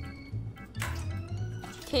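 Background music with a steady beat. About a second in, a short splash and trickle of water: a dog splashing water from its bowl into its dry kibble.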